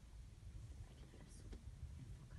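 Faint whispering voices over a low steady rumble, with a brief soft hiss just past the middle.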